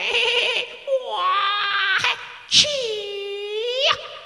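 A young person's high voice wailing in long, drawn-out notes, three of them. The last note dips in pitch and climbs back up before cutting off.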